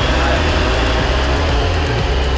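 Wind rumbling on the microphone with a steady hiss, under a faint high whine from small electric RC aircraft motors and propellers.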